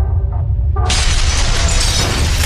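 Intro sound effects: a deep steady rumble, then about a second in a sudden loud shattering crash that runs on as a spray of breaking debris.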